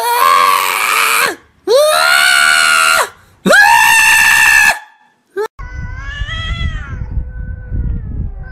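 Tortoiseshell cat meowing loudly: three long, drawn-out calls, each rising in pitch and then held, with short pauses between. Near the end a quieter, wavering cat call comes over a low background rumble.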